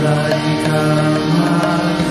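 Devotional kirtan: voices chanting a melody in long held notes, over a light percussion beat.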